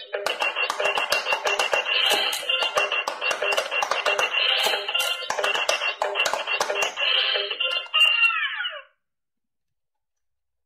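Electronic pop-it push game playing a beeping electronic tune through its small built-in speaker, with rapid clicks as the silicone bubbles are pressed. Shortly after eight seconds the tune ends on a falling tone and the toy goes silent.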